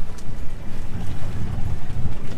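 Wind buffeting the microphone on an open boat: a loud, uneven low rumble.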